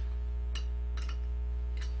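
A few faint metallic clicks, three in all, as a small open-end wrench snugs a brass air-acetylene tip onto a torch handle, over a steady low hum.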